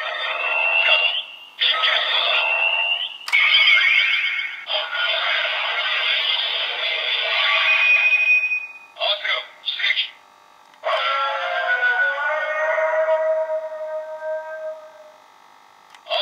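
DX Blazar Brace transformation toy playing its electronic sound effects and recorded voice calls through its small built-in speaker, thin and tinny. It runs through several separate segments, with a hissy effect near the middle, a pair of short chirps, and a long tonal sequence near the end.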